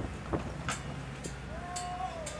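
Steady low hum of ship machinery, with a few sharp knocks and, in the last half second, a short pitched tone that bends downward.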